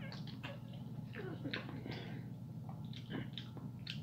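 A man chewing a mouthful of macaroni and cheese: faint wet mouth sounds and small clicks, scattered irregularly.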